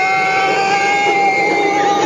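Roller coaster riders screaming: several voices overlap in long, high-pitched held cries over the steady rushing noise of the moving coaster train.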